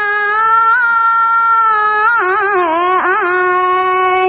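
A single high-pitched voice singing unaccompanied in long held notes, with a wavering, ornamented run about two seconds in before it settles on a steady note again.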